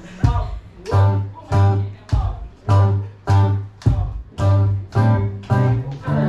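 Acoustic guitar strumming a steady run of chords, a little under two strums a second, each chord struck sharply and left to ring briefly.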